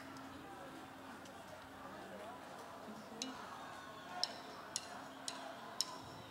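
Faint voices of a large concert crowd, then sharp drumstick-style clicks near the end, four of them evenly spaced about half a second apart: a count-in for the band.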